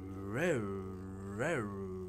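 Electric motor of a Hornby Castle Class model steam locomotive running slowly on a rolling road. Its hum swells and rises in pitch, then falls back, about once a second, a 'zoom, zoom, zoom' surge with each turn of the wheels. The owner is unsure whether a warped back driving wheel or paint on the coupling rods causes it.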